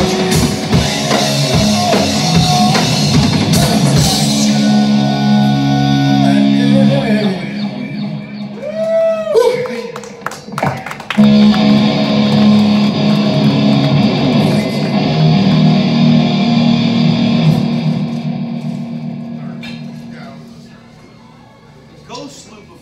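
Live rock band with electric guitar: drum hits stop about four seconds in, then held guitar chords ring on, with a few bending, swooping notes near the middle and a sharp hit at about eleven seconds. A last chord rings and fades away over the final few seconds, the end of a song.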